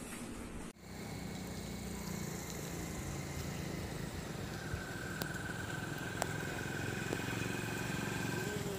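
Outdoor background noise: a steady low rumble like a running engine or wind on the microphone. A faint, thin high-pitched tone comes in about halfway through, along with a few sharp clicks.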